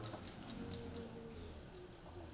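Quiet room tone with a low hum, a few faint clicks in the first second and a faint held tone.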